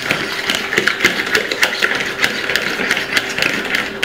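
A hand whisk beating eggs in a plastic bowl, the wires clicking against the bowl's side several times a second in a quick, steady rhythm.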